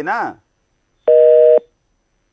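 A telephone busy tone: one loud, steady two-pitch beep about half a second long, about a second in. It is the sign of a phone line disconnecting.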